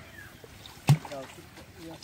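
A single sharp, hollow knock about halfway through as an aluminium pot is set down into the shallow water at the pond's edge, with men's voices talking briefly around it.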